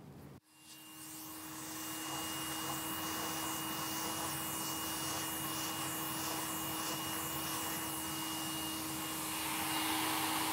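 Vacuum cleaner running steadily through a hose fitted with a soft-bristle brush nozzle, brush-vacuuming a mouldy paper document: a rush of air with a constant hum and a thin high whine. It comes in after a short break about half a second in and swells over the first second or two.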